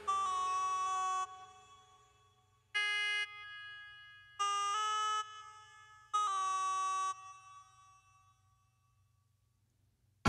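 Four held synthesizer chords from the song's playback, each lasting about half a second to a second and cut off into a short fading tail, with near silence over the last two seconds.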